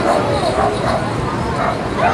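Many young children's voices chattering and calling out over one another, without a break.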